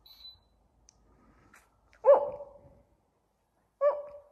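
A small dog, a long-haired dachshund, barking twice: one loud bark about two seconds in and a shorter one near the end. A faint, short high beep sounds at the very start.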